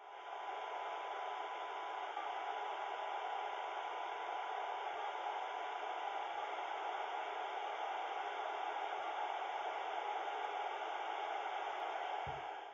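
Yaesu FT3D handheld radio's speaker hissing with FM receiver noise, a faint steady 1 kHz test tone just audible through the hiss: a very weak signal from a TinySA Ultra generator near the limit of the receiver's sensitivity.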